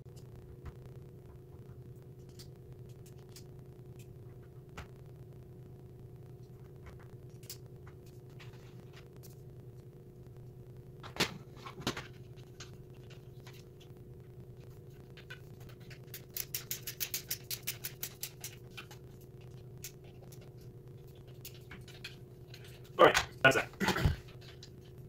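A hand screwdriver working small plastic and metal toy-kitchen faucet parts over a steady low hum: two sharp clicks about halfway through, then a quick, even run of about a dozen light ticks. A few louder knocks come near the end.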